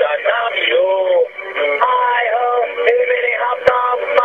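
A man singing into a phone, played back from a digital answering machine's recording through its small speaker, with thin telephone-line sound. A sharp click comes near the end.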